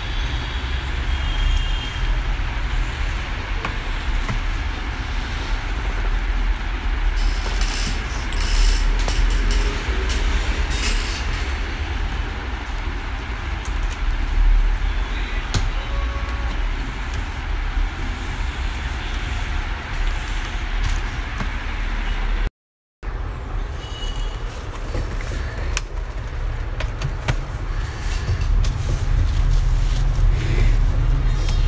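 Steady low rumble with a hiss of background noise, with a few faint clicks. It cuts out briefly about three-quarters of the way in.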